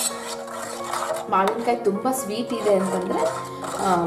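A steel ladle clinking and scraping against a metal pot as thick curry is stirred, over background music. A voice comes in with the music after about a second.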